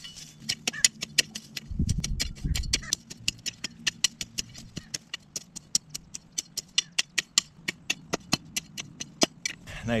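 Hand hoe blade chopping and scraping through weeds and soil, a rapid, even run of sharp strokes at about five a second.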